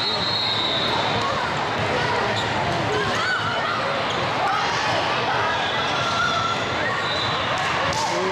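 Volleyball rally in a large echoing hall: the ball struck a few times against a constant babble of voices and shouts from players and spectators on many courts, with a short referee's whistle at the start for the serve.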